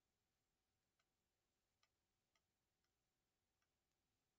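Near silence, with a few extremely faint ticks.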